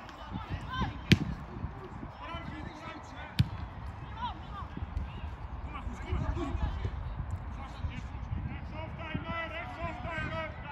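Football kicked on an artificial turf pitch: two sharp thuds, about a second in and about three and a half seconds in, amid players' shouts and calls across the pitch.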